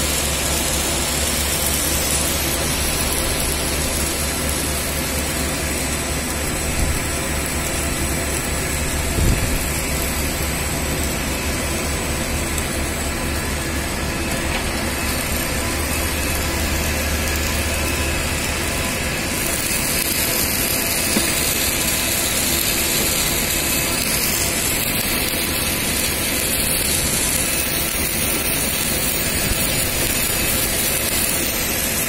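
Steady machinery noise and low hum from a submerged arc welding setup on a large steel pipe, with a few light clicks. The hum eases about two-thirds of the way through.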